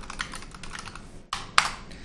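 Rapid typing on a computer keyboard, a quick run of key clicks with a couple of louder strikes about one and a half seconds in.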